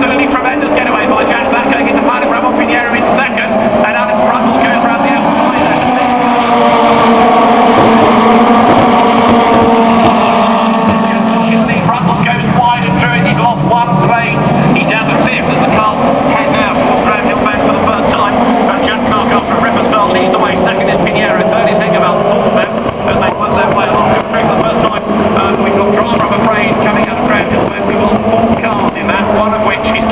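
A field of FIA Formula 2 single-seaters with turbocharged four-cylinder engines running at racing speed. Several engine notes overlap and rise and fall through gear changes, loudest as the cars pass close about a third of the way in.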